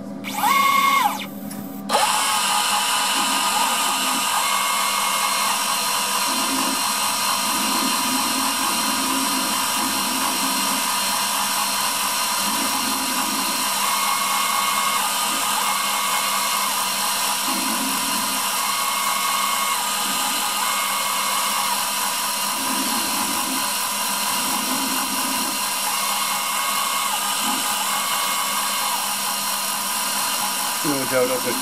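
CNC router spindle with an engraving bit running and cutting into a brass ring. A short rising-and-falling tone about half a second in is followed, from about two seconds in, by a steady high-pitched whine, with a lower whirr beneath it that changes every second or two as the machine's axes move.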